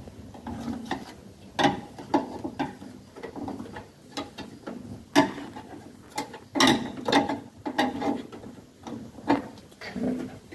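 Irregular clicks and knocks of a screwdriver and wires against the terminals and metal enclosure of an on-load changeover switch as its terminations are checked by hand.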